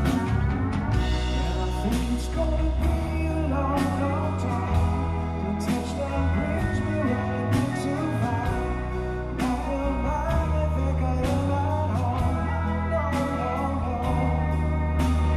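Live rock band playing an instrumental passage: a lap steel guitar plays a sliding lead line over electric guitar, bass and drums, with regular cymbal and drum hits.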